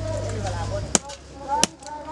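A blade chopping into a piece of split wood, two sharp strikes less than a second apart.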